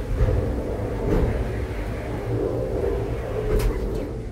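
Low rumble inside a gondola cable-car cabin as it runs out of the station, with two sharp clanks, about a second in and near the end.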